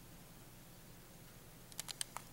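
Faint steady hiss, then a quick cluster of three or four sharp clicks near the end.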